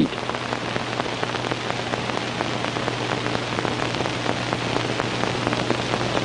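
A steady crackling hiss, like rain on a surface, over a low steady hum.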